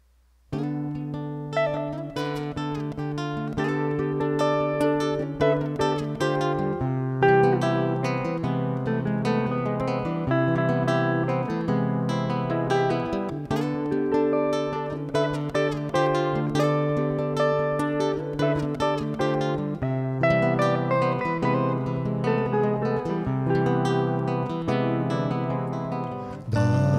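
Instrumental guitar duet of a hollow-body archtop electric guitar and a nylon-string acoustic guitar. It starts suddenly about half a second in, with quick picked notes over held bass notes and chords.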